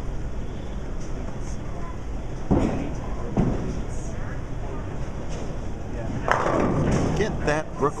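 Bowling ball delivered with thuds about three seconds in, then a clatter of pins a little after six seconds on a Brooklyn hit, the ball crossing to the wrong side of the head pin and leaving a spare. A steady rumble of balls and pinsetters on the other lanes runs underneath.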